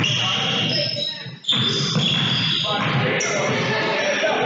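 Basketball dribbling on a gym's hardwood floor, with sneakers squeaking and voices echoing in the hall.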